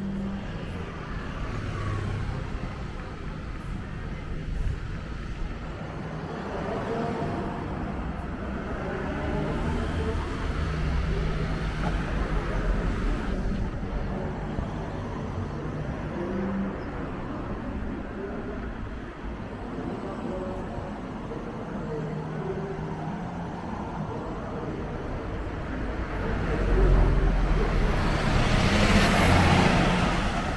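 Road traffic passing steadily, car engines and tyres on asphalt. From about 26 seconds in, a MAN-chassis Irizar i6 tour coach drives past close, its diesel engine rumble and tyre noise swelling to the loudest point near the end.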